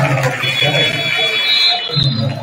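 A long, high-pitched steady signal tone starts about half a second in and holds for roughly a second and a half, with a man's voice underneath. It marks a stoppage in a basketball game.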